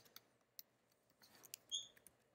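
Faint, scattered computer keyboard keystrokes as code is typed, with a brief high squeak near the end.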